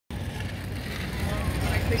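Outdoor urban ambience: a steady low rumble with faint distant voices coming in during the second half.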